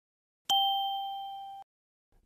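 A single bell-like ding, a chime sound effect marking the change to the next title card. It is struck about half a second in, rings clear and fades evenly, then cuts off suddenly about a second later.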